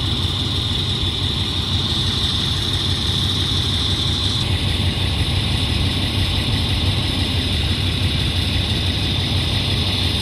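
Fire apparatus diesel engines idling, a steady drone with no break.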